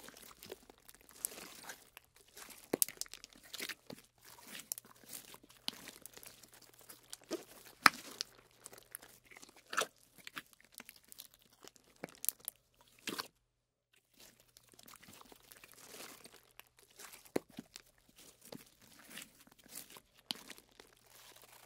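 Slime being squished and stretched by hand: irregular crackling and sharp clicking pops. The loudest snap comes about eight seconds in, and there is a short break of near silence just after thirteen seconds.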